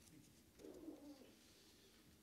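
Near silence: room tone in a pause of speech, with one faint, short low sound about half a second in.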